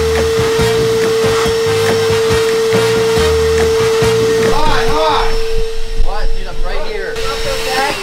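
Wet/dry shop vacuum running with a steady whine that cuts out just before the end.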